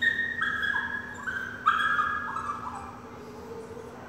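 A small dog whining in high, steady notes that step down in pitch. There are two runs, the second and louder starting after about a second and a half and tailing off about three seconds in.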